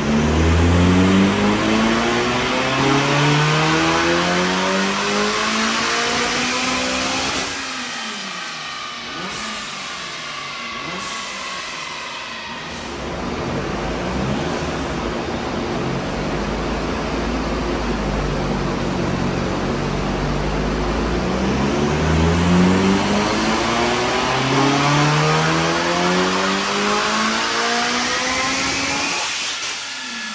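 Supercharged Honda Civic FN2 Type R's K20 2.0-litre four-cylinder engine making two full-throttle pulls on a rolling-road dyno. Its revs climb steadily for about seven seconds, then drop away as the throttle is lifted. After a lower spell the revs climb again in a second run that cuts off near the end.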